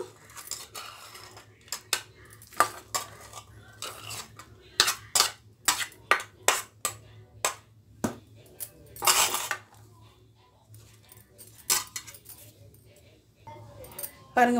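A steel spoon clinking and scraping against a stainless steel bowl while scooping fried corn kernels onto a plate. The clinks are irregular, with a longer scrape just after nine seconds.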